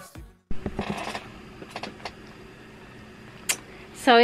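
Pop music cuts off at the very start, then faint room sound with a few soft clicks and knocks.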